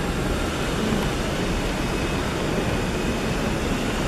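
Steady rushing noise of electric wall fans running, even and unbroken, with no distinct events.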